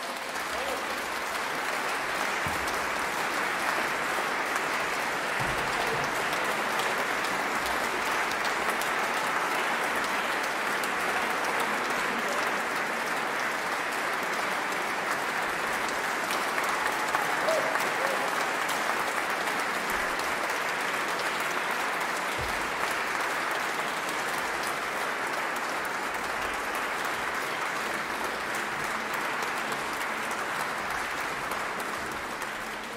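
Concert audience applauding, a dense, steady clapping.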